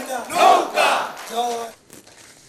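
Large crowd shouting, many voices at once, cutting off suddenly near the end.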